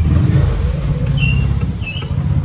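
Electric stand fan running on its newly replaced 2 µF motor capacitor, a steady low rumble of the spinning blades and their air on the microphone.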